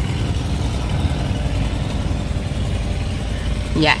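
Steady low rumble of a car's engine and road noise heard from inside the cabin while riding, with a voice starting near the end.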